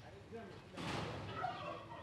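A domestic fowl calling faintly in the background, with a short call about a second in.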